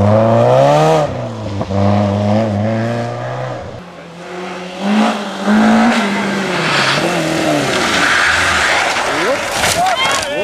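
Small rally cars' engines revving hard on a snowy stage: one engine rises and falls in pitch for the first few seconds, then a second car's engine revs about five seconds in. This is followed by a hiss of tyres sliding on snow and a sudden knock near the end as the car runs off into the snowbank.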